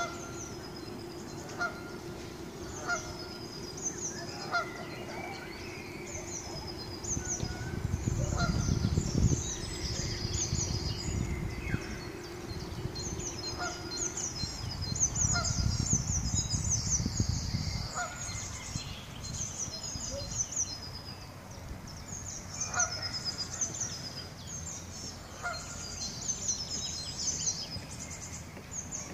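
Geese honking now and then, short single calls a few seconds apart, over the continuous chirping of small songbirds. Gusts of wind rumble on the microphone twice.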